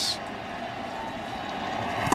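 Steady crowd murmur in a ballpark, heard under a pause in the TV commentary.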